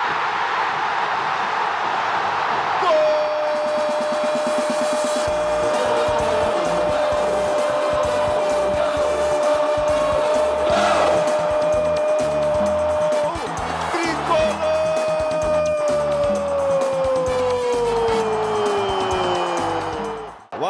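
A football commentator's drawn-out goal shout in Portuguese over a cheering stadium crowd: one long held note for about ten seconds, a quick breath, then a second long shout that slides slowly down in pitch.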